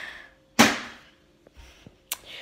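A flipped plastic water bottle hits the floor with one sharp smack about half a second in, fading quickly, followed by a couple of faint taps as it settles.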